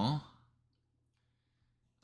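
A man's voice trailing off at the end of a word, then near silence.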